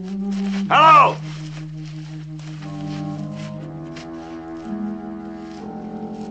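Orchestral film score holding sustained low, brooding notes. About a second in, a man gives one loud shouted call, its pitch rising and falling.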